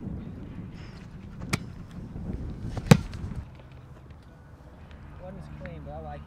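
A football being punted: a loud, sharp smack of the foot on the ball about three seconds in, with a lighter smack about a second and a half before it. Wind rumbles on the microphone throughout.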